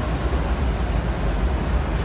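Steady background din of a large exhibition hall, a constant low rumble under an even hiss, with no distinct events.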